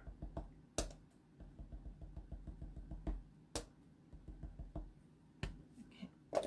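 Small wooden-handled rubber stamp being tapped onto paper to dab ink into a stamped image: a few sharp, irregularly spaced taps with fainter ticks between them.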